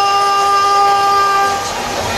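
Arena horn over the sound system: one steady, held tone with no change in pitch that cuts off about one and a half seconds in.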